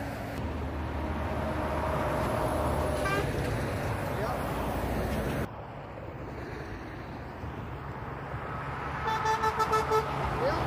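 Motorway traffic passing, with lorry engine and tyre noise that swells over the first few seconds and then drops off abruptly to a quieter stream. Near the end, an approaching articulated lorry's air horn sounds a quick series of short toots.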